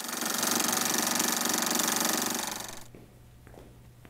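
A rapid, even, buzzing rattle that swells in, holds for about two seconds and fades away, typical of an inserted transition sound effect.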